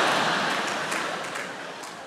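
Large theatre audience laughing, with some clapping. The sound is loudest at the start and dies away gradually.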